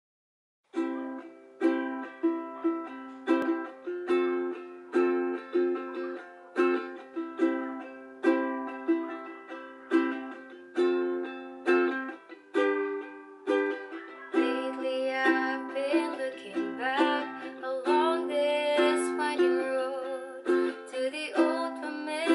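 Ukulele strummed in a steady rhythm, playing a C–F–C–F–G chord intro, starting about a second in. Partway through, a singing voice joins over the strumming.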